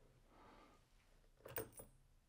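Mostly near silence, broken about one and a half seconds in by a brief cluster of small knocks and clicks as the broken plywood test piece is handled at the pull-test rig.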